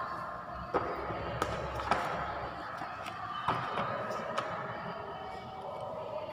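Indistinct background voices with about five sharp, irregularly spaced knocks.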